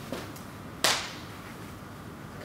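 A single sharp crack a little under a second in, with a brief ring-off in the room, over quiet room tone.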